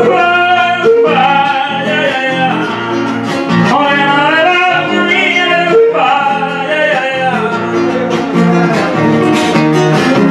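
A man singing long, gliding, wavering held notes into a microphone over an acoustic guitar. The singing drops away near the end while the guitar keeps playing.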